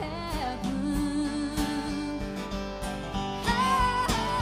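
Live band music: guitar playing under a woman's singing voice, her sung phrases bending in pitch near the start and again near the end.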